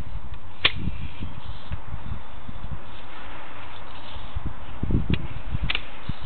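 Sewer inspection camera's push cable being drawn back through a drain line: a steady hiss with scattered low thumps and a few sharp clicks, densest near the end.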